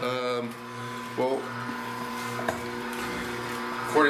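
NC900HD slow masticating juicer's motor humming steadily, with a couple of brief vocal sounds near the start.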